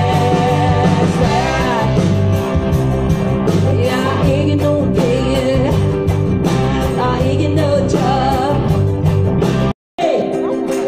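Live rock band playing: a woman singing over electric guitar and bass with a steady beat. The sound cuts out suddenly for a moment near the end.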